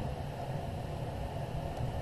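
Steady low hum and hiss of background room noise, with no distinct event.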